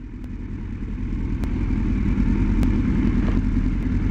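A motor vehicle's engine running with road rumble, growing steadily louder.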